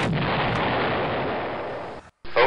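Explosion or artillery-blast sound effect dubbed over the video: a loud, even, rushing noise that holds steady and eases slightly toward the end.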